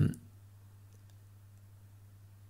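The end of a man's drawn-out "um", then a pause of room tone with a low steady hum and a faint click or two.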